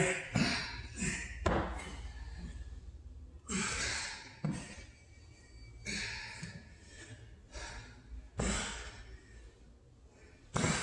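Hard exhales and gasping breaths of men working through dumbbell push-ups, one every second or two, with dull thuds as the dumbbells are set back on the rubber gym floor.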